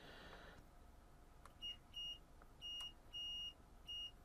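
Digital multimeter's continuity beeper giving about five short, uneven beeps as the test probes touch the pins of the power board's IC, with faint clicks of the probe tips. The beeping shows a short across the IC: the IC has gone.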